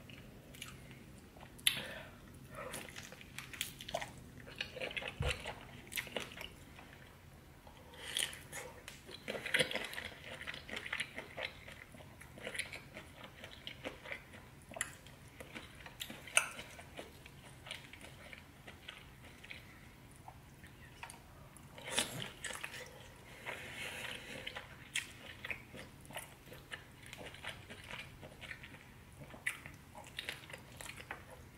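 Close-miked eating: biting into and chewing sauce-coated shrimp and other seafood, with wet, sticky mouth sounds and scattered sharp crunches and clicks.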